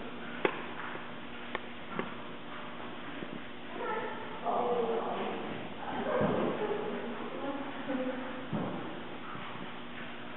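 A dog whining and barking in a large hall, with people's voices around it. Three sharp clicks come in the first two seconds.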